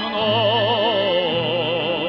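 Lyric tenor singing one long held note with a wide, even vibrato, over a low instrumental accompaniment.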